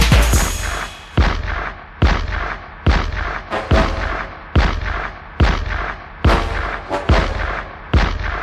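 Hip-hop beat with no vocals: heavy booming hits, evenly spaced a little under a second apart, each with a long bass tail.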